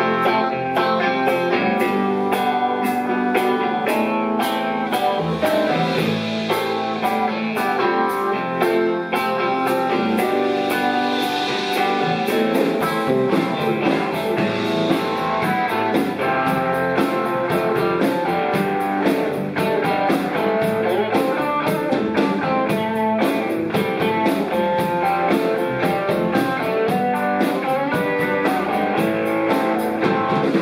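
Live electric blues band playing without vocals: electric guitar over bass guitar, drum kit and keyboard, with a steady beat.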